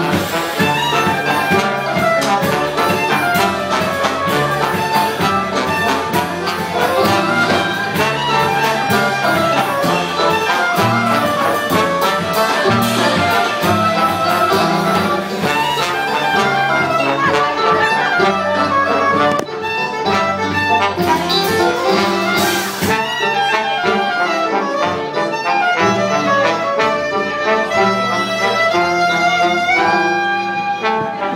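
A live swing-jazz band plays an instrumental passage with no singing: trombone and soprano saxophone lead over strummed banjo and drums, with a cymbal splash about two-thirds of the way through.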